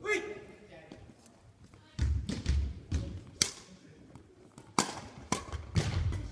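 Badminton rally: sharp clicks of a shuttlecock struck by rackets, four in the second half, with dull footstep thuds on a wooden gym floor, echoing in the hall. A short voice sounds right at the start.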